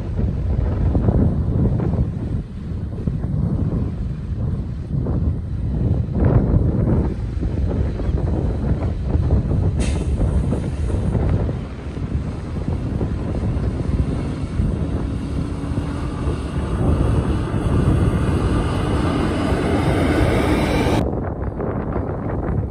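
Wind buffeting the microphone in uneven gusts. In the second half a steady motor hum joins in, then cuts off suddenly near the end.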